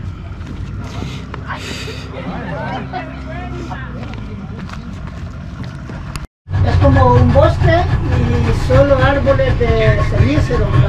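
A small boat's outboard motor runs as a steady low drone, loud from a cut about six seconds in, with voices talking over it. Before the cut, a quieter steady low hum sits under faint voices.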